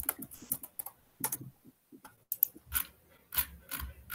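Typing on a computer keyboard: a string of irregular keystrokes entering a search into a PDF viewer.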